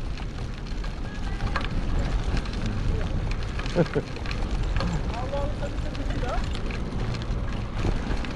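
Steady low rumble of a recumbent trike and its towed pet trailer rolling along a paved street, with wind on the microphone. A few short voice-like calls sound faintly near the middle.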